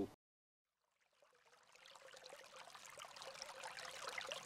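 Dead silence for about a second, then a faint crackling hiss that slowly swells.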